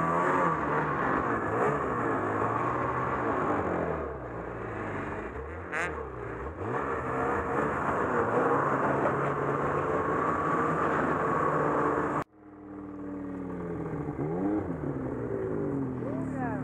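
Ski-Doo Summit XM snowmobile's two-stroke engine revving up and down under the rider, its pitch repeatedly rising and falling with the throttle. About twelve seconds in the sound cuts out abruptly, then the engine comes back revving again.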